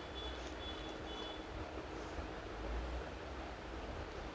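Steady background noise, a low rumble under an even hiss, with faint high-pitched tones coming and going in the first second and a half.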